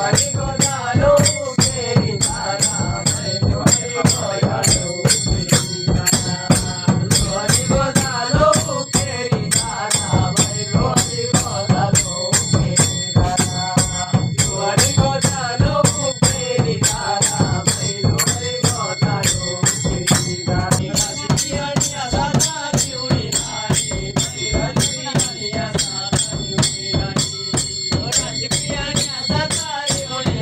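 Himachali devta ritual music played for a trance dance: a drum beating a fast, steady rhythm with clashing metal cymbals or bells ringing on the beat, under a wavering melody line.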